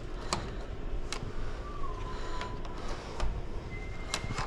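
Electronic key-card lock on a hotel room door: a few sharp clicks, a short slightly falling electronic tone, then more clicks. A steady, higher beep starts near the end as the lock releases.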